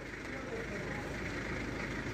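Background noise of a busy wholesale produce market: a steady low rumble with faint, indistinct voices.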